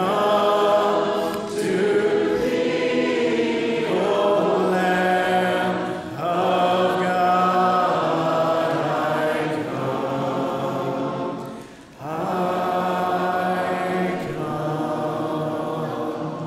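Congregation singing a hymn unaccompanied, a cappella, in several-part harmony, with long held notes. There is a brief break between phrases about three-quarters of the way through.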